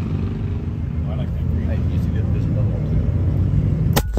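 A steady low rumble with faint voices, then a single sharp crack at the very end: a shot from a scoped air rifle.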